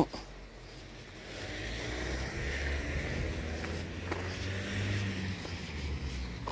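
A road vehicle passing: a steady rushing sound that swells over a couple of seconds, holds, and begins to fade near the end.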